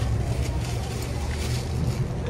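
A steady low rumble with faint ticks and rustles above it.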